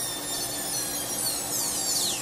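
High-speed dental handpiece whining as its Endo-Z bur smooths the access walls of a plastic typodont tooth. The high whine dips and rises in pitch as the bur bears on the tooth, dropping most steeply near the end.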